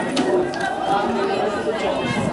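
Several people chatting at once, voices overlapping, with a brief click just after the start.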